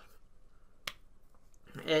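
A single short, sharp click a little under a second into a quiet pause.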